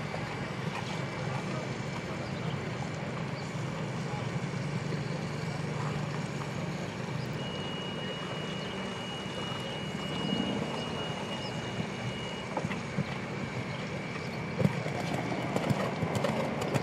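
Outdoor show-ground background: a steady low engine-like hum with distant voices, and a single high steady tone held for about five seconds in the middle. Near the end, hoofbeats of a trotting horse on sand footing come in as sharp irregular knocks.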